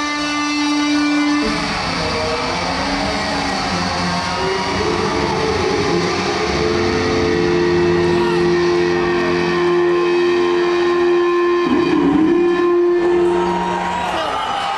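Distorted electric guitar playing a slow solo through an arena PA: long sustained notes with pitch bends, including one note held for several seconds in the middle.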